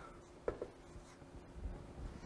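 Faint room tone in a small room, with a low steady hum and a soft click about half a second in.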